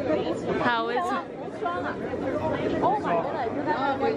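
People's voices and chatter, with one voice rising and falling strongly about a second in.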